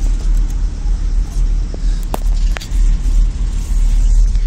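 Low rumbling noise inside a moving cable-car gondola cabin, rising and falling in level, with two short clicks about halfway through.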